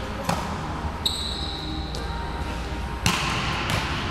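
Volleyball being struck and bouncing on the gym floor during hitting drills: a few sharp slaps, the loudest about three seconds in and echoing in the hall. A short high squeak sounds about a second in.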